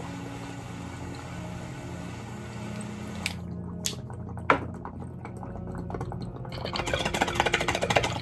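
A torch flame hisses steadily for about three seconds, preheating the Lotus vaporizer, and cuts off with a click; then the draw bubbles through the water pipe, building in the last second or two.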